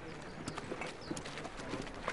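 Irregular clip-clop of footfalls on hard, dry ground, about five knocks a second, over a faint background murmur.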